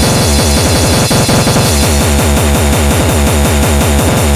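Splittercore (extreme speedcore) electronic music, very loud: a relentless rapid stream of distorted kick drums, several per second, under a harsh wall of high noise. About a second in, the kicks briefly quicken into a blurred roll before the steady pattern returns.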